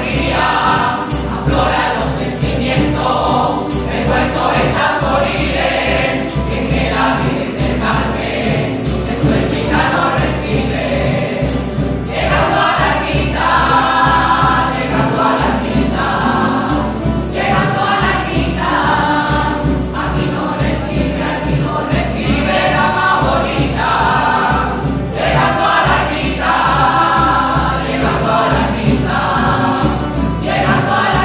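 Rociero choir of men and women singing together in phrases, accompanied by a strummed Spanish guitar.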